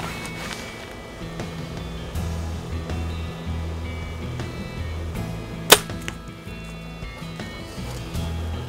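Shot from a Diamond Edge SB1 compound bow at a wild hog: a single sharp crack about two-thirds of the way through as the arrow is loosed and strikes. Background music with steady low notes plays throughout.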